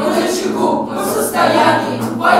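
A group of children singing together, accompanied by an acoustic guitar.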